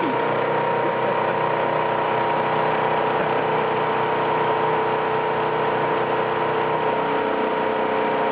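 Flexor 380C servo-driven label die-cutting and rewinding machine running at production speed, 200 m/min: a steady mechanical hum with a constant whine in it.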